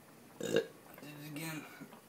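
A man's wordless vocal sounds: a short sharp one about half a second in, then a low, drawn-out one lasting over half a second.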